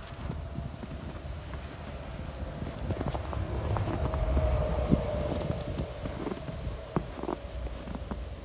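Footsteps crunching irregularly in fresh snow, over a low wind rumble on the microphone.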